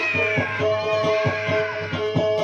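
Music on a plucked string instrument: a steady drone with quick, evenly repeated low plucks. Over it, a high sliding tone falls gradually in pitch across the first second and a half.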